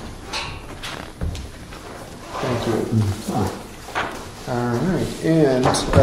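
Papers being handled and pages turned on a table, with light clicks and knocks. About two seconds in, a man starts speaking quietly.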